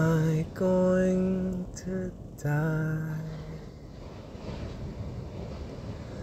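A male voice sings slow, held notes of a chant-like melody, four notes in the first three and a half seconds, each sustained and stepping between pitches. After the notes, only a low, steady hiss remains.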